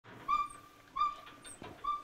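An animal giving three short, high-pitched, whistle-like calls, each steady in pitch and about a second apart.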